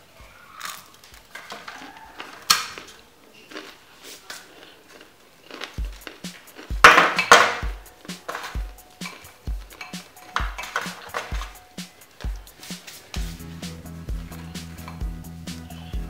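Crisp baked tapioca toasts being broken and piled into a glass bowl off a metal baking tray: scattered crackles, snaps and light clinks, the loudest a burst of crunching about seven seconds in. Background music with a steady beat runs underneath, growing stronger in the second half.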